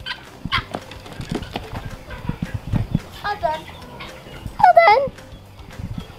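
Chickens and turkeys being herded, giving two short calls, about halfway and near the end, amid scattered scuffs and light knocks of footsteps on a dirt yard.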